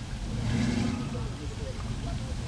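A car engine revving as it accelerates, loudest between about half a second and a second in, over a steady low rumble, with voices in the background.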